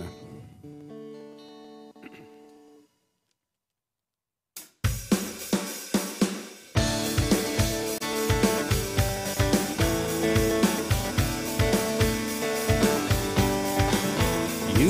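Acoustic-electric guitar: a held chord fades out, then after a short silence a strummed rhythm with sharp percussive hits begins. About two seconds later it thickens into a steady, fuller beat as the looper pedal layers a recorded phrase under the live playing.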